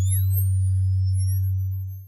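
Synthetic TV-ident sound effect: a steady low hum with thin high tones gliding slowly upward over it and a couple of tones sweeping downward, fading out near the end.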